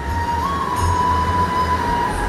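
Steady low electrical hum with a thin, steady whistling tone above it, which steps up slightly in pitch about half a second in, heard in a pause in the talk.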